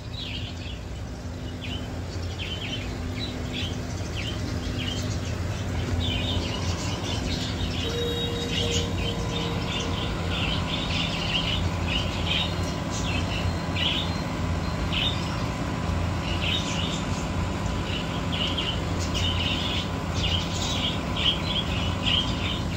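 Small birds chirping, a rapid scatter of short high chirps throughout, over a steady low hum.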